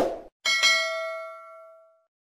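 Subscribe-button animation sound effect: a short burst right at the start, then a bright bell ding about half a second in that rings out and fades away over about a second and a half.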